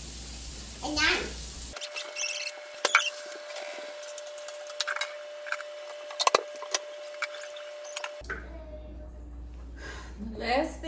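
Kitchen clean-up clatter: scattered light knocks and clinks of dishes and utensils being handled, with a sharper cluster of knocks about six seconds in, over a faint steady hum.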